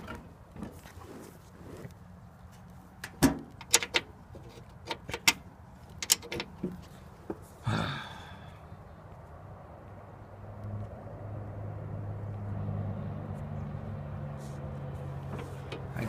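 Scattered clicks and knocks from handling the controls of a Cub Cadet 125 garden tractor before it is started. From about ten seconds in, a low steady engine hum comes in and grows slightly louder.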